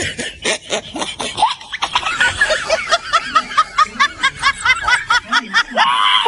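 High-pitched snickering laughter, a rapid run of short laugh pulses about five a second that climbs in pitch about two seconds in.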